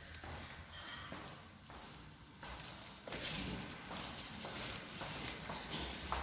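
Footsteps on stairs, a steady run of steps about two a second.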